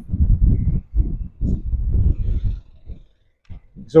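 Wind buffeting the microphone: a loud, uneven low rumble in gusts that dies away about three seconds in.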